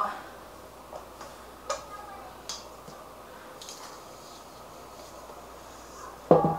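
Faint handling sounds as risen bread dough is eased out of its mixing bowl by hand: a few soft, scattered taps and clicks over quiet room tone.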